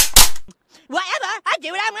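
Two sharp, loud gunshot-like bangs about a fifth of a second apart, followed after a short pause by a high-pitched voice speaking.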